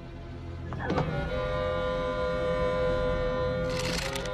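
Orchestral film score swelling into a sustained, held chord. A sharp hit comes about a second in, and a brief burst of noise near the end.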